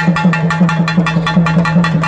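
A pair of pambai drums beaten with sticks in a fast, even rhythm of about six strokes a second. A steady low hum underneath swells with each stroke.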